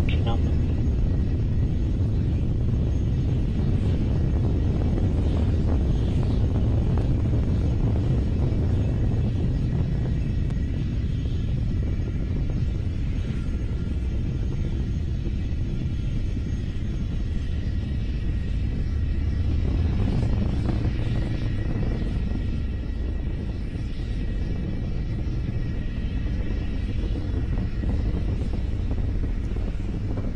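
Deep, steady rumble of a Falcon 9's nine-engine Merlin first stage climbing away, easing slightly in loudness as the rocket gains altitude.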